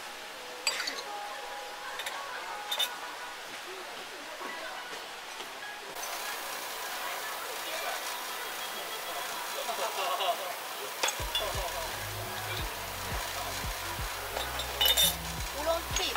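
Porcelain tea ware clinking as cups, pitcher and teapot are handled on a bamboo tea tray: a few sharp, separate clinks. Background music with a steady beat comes in about two-thirds of the way through.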